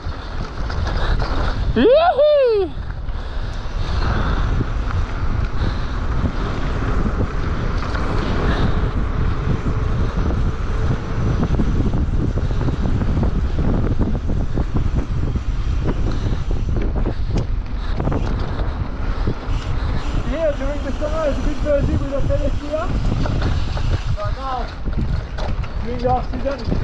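Mountain bike ridden fast downhill: heavy wind buffeting on the camera microphone over the rumble and rattle of tyres on dirt and gravel. A short pitched sound that rises and falls cuts through about two seconds in, and wavering pitched squeals come near the end.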